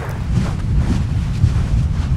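Deep, steady rumble of lava fountains jetting from an erupting fissure, mixed with wind buffeting the microphone.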